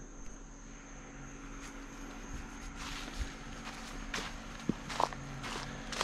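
Footsteps on a dry leaf-litter forest trail, a crunch about every half second, coming thicker from about three seconds in. A steady high insect trill runs underneath.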